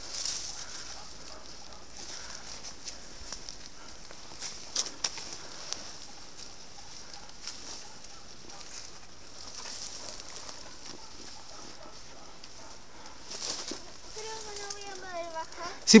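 Quiet outdoor ambience on a dry scrub slope: a faint steady high hiss with scattered soft crackles and taps of movement over dry earth and brush. About two seconds before the end comes a faint high call that falls in pitch, and speech begins right at the end.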